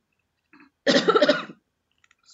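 A woman coughing: one short, harsh cough about a second in.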